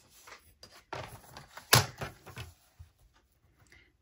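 Paper rustling as a sheet is handled, with a few light knocks as a paper trimmer is set down on the cutting mat and the paper positioned in it; the sharpest knock comes a little under two seconds in.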